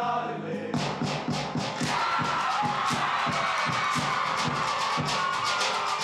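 A men's group singing a held chord in unison. Less than a second in, it gives way to a fast, steady beat of sharp percussive strokes, about four a second, with a sustained sung line over it.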